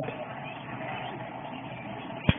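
A homemade Van de Graaff generator running, heard as a quiet steady hiss with no distinct tone.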